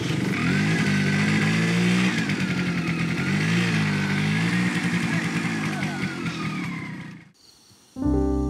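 Motorcycle engine running, its pitch rising and falling with the throttle. It fades near the end and then cuts off abruptly.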